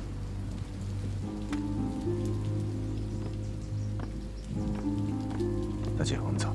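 Background drama score of low held notes that step to new pitches every second or so, over a steady hiss.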